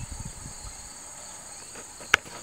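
Steady, high-pitched chorus of insects droning without a break.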